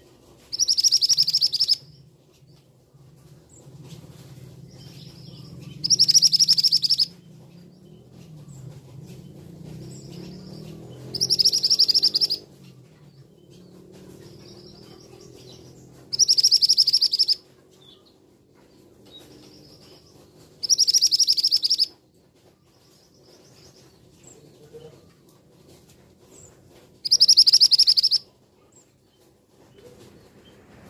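Male scarlet minivet calling: six loud, high trilled calls, each about a second long, repeated roughly every five seconds, with fainter high notes between them.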